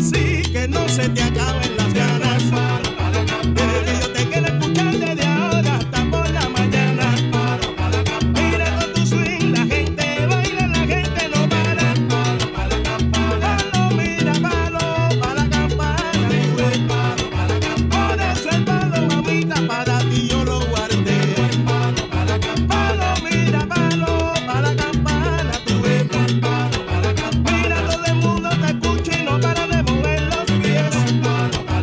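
Salsa band recording in its montuno section: the bongo bell and timbale bell ring out the beat over a repeating piano guajeo and bass tumbao, with the trombone section and chorus singing.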